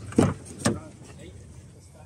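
A short loud sound and then a sharp click within the first second, followed by low steady background noise.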